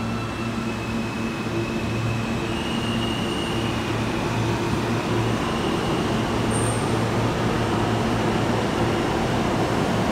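Subway train rumbling through the tunnel, a steady noise that grows slowly louder, with faint high-pitched tones of wheels on rail.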